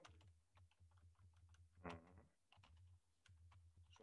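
Faint computer keyboard typing: a scattered run of quiet keystrokes over a low steady hum, with one brief vocal sound about two seconds in.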